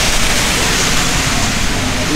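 Loud, steady rushing noise with no distinct events, evenly spread and strongest in the hiss range.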